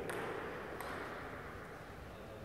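Table tennis ball bouncing: two light, sharp clicks about three-quarters of a second apart, as the ball is bounced before a serve.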